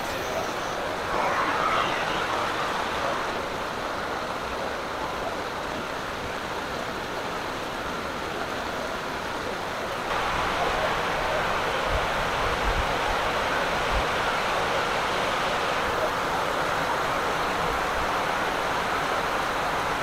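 Heavy rain falling steadily: a constant hiss that gets a little louder about halfway through.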